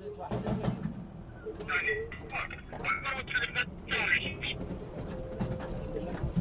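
Voices speaking in short bursts over the low noise of a military convoy, with a few sharp cracks.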